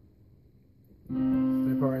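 Yamaha Portable Grand digital keyboard in a piano voice: after about a second of quiet, a chord is struck and held, ringing on. The chord is C–G–C in the left hand under E-flat, A-flat, C in the right, an A-flat chord over a C bass.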